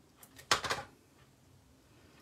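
Small cardstock strips being handled on a silicone craft mat: a couple of faint ticks, then a short scraping rustle of paper about half a second in.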